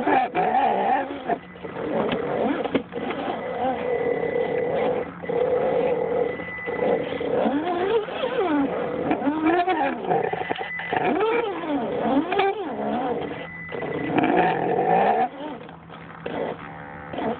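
Electric motor and gear drivetrain of an Axial SCX10 scale RC crawler whining as it crawls, the pitch repeatedly rising and falling with the throttle.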